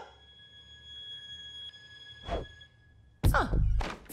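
A faint, high-pitched held tone with overtones, like a soundtrack sting. A brief whoosh passes about two seconds in, and a deep thump lands near the end.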